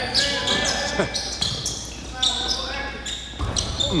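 Basketball game play in a gym: sneakers squeak sharply and often on the court floor, with the ball bouncing, in a hall with an echo.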